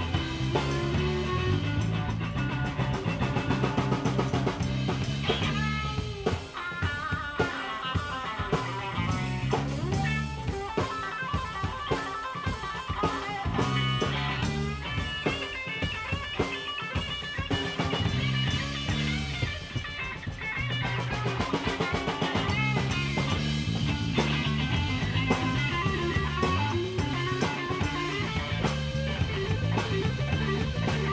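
Live rock band playing instrumentally: electric guitars over a drum kit. In the middle the low end thins out while a lead guitar plays high melodic lines, and the full band comes back in about twenty seconds in.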